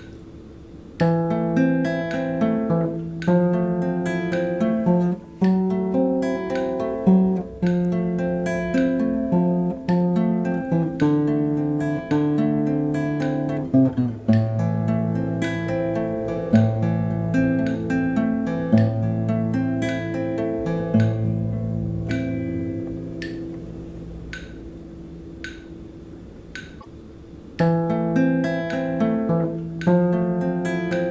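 Instrumental outro music on acoustic guitar, plucked notes and chords. It starts about a second in, dies away over the last few seconds, and starts over near the end.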